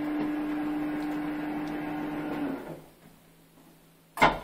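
Hold-to-run passenger lift's drive motor running with a steady hum and one clear tone, then cutting out about two and a half seconds in as the lift stops automatically at the floor, leaving near silence.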